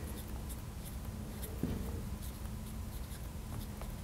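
Marker pen writing on a glass lightboard: a quick run of short strokes and taps as letters are drawn.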